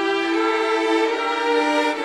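String orchestra playing long held chords, with the violins prominent. The chord moves to a new one about a quarter of a second in, and again near the end.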